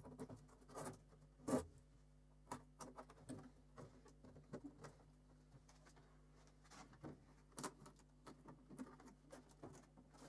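Faint, scattered clicks and scratches from hands handling a polycarbonate aero disc cover mounted on a bicycle wheel, with one sharper knock about one and a half seconds in.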